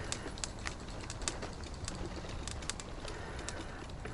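Outdoor ambience with scattered short, high bird chirps at irregular intervals over a steady low background rumble.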